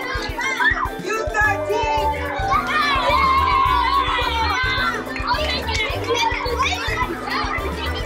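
A hall full of children talking and calling out at once, over background music with a steady beat.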